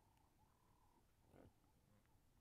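Near silence: a faint steady thin tone, and one brief soft noise about one and a half seconds in.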